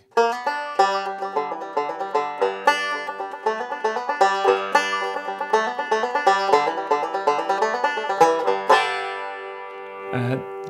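Custom Nechville tenor banjo with a long five-string-banjo neck, tuned down a tone and capoed at the second fret, picked in a quick run of notes with an adapted cross-picking that imitates a clawhammer five-string banjo. The last chord is left ringing from about nine seconds in.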